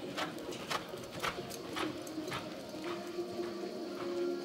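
Hoofbeats of a horse loping on arena sand, about two dull strikes a second, growing fainter after the middle.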